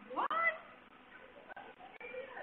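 A short high-pitched voice-like call in the first half second, sliding up and then arching down in pitch, heard thin through a doorbell camera's microphone.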